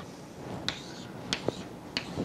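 Chalk on a blackboard during writing: a few sharp taps roughly half a second apart, with a brief scratch after the first.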